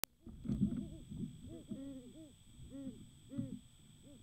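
A pair of great horned owls hooting in duet: a run of short, low, arched hoots from both birds, starting about a second and a half in. Before the hoots, the loudest sound is a rush of wing noise as one owl flies in and lands beside the other.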